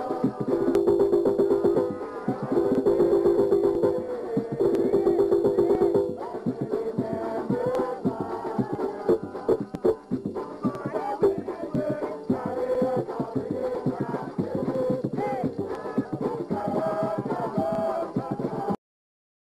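Live folk music: fast hand percussion with voices singing. A held low note sounds three times in the first six seconds.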